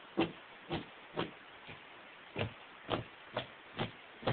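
Plastic-coated lead weights of a six-pound cast net dropped repeatedly onto the floor: a series of about seven dull thuds, roughly two a second.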